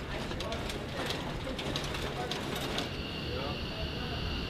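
Rapid, irregular metallic clicking of linked 20 mm rounds running through the chute of a Universal Ammunition Loading System into an M61 Vulcan rotary cannon, with voices faintly under it. Near the end the clicking stops and a steady high whine takes over.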